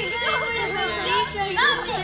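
Young people laughing and jeering at someone, their voices coming one after another.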